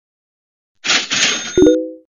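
A sound effect: a loud burst of hiss, then a low thump about a second and a half in with a ringing metallic clang on a few notes, cut off abruptly.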